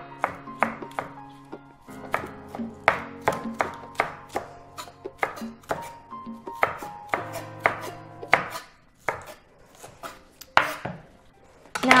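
Chef's knife chopping a shallot finely on a wooden cutting board: a run of sharp, uneven strikes, about two a second, that stops shortly before the end.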